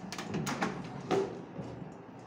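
Oven being handled as the cake pan goes in: a quick run of light clicks, then a louder clunk about a second in.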